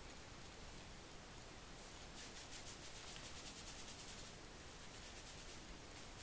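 Fingertips roughly massaging the scalp through thick, oiled kinky hair: a faint, scratchy rubbing in a fast run of about eight strokes a second from about two seconds in until just past four, with a few softer strokes after.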